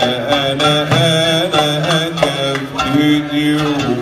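Live Arab-style music: a male voice sings a wavering, ornamented melodic line over plucked oud, with darbuka strokes.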